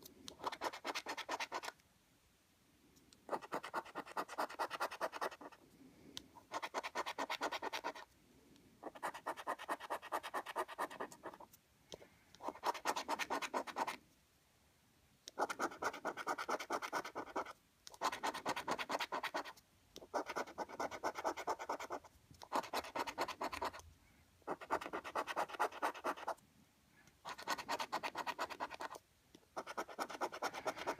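A coin scratching the coating off a lottery scratchcard in about a dozen short bursts of rapid back-and-forth strokes, each one to two seconds long with brief pauses between.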